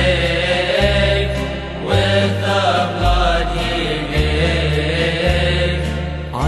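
Music: a chant-like sung hymn, one voice carrying long wavering notes over low held notes that change about once a second.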